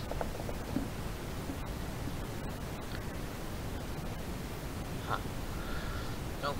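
Steady wind noise on the microphone, a low rumble and hiss, with a few faint rustles.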